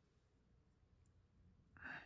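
Near silence: faint room tone, with one brief soft burst of noise near the end.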